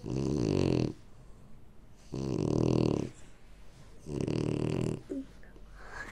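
Dog snoring: three snores about two seconds apart, each lasting about a second.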